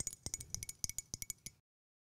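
A quick run of light clicks and clinks, about a dozen in a second and a half, then the sound cuts off to dead silence.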